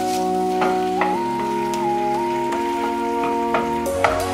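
Spinach sizzling as it wilts in oil in a nonstick frying pan, with light crackles, under background music of held chords that shift in pitch now and then.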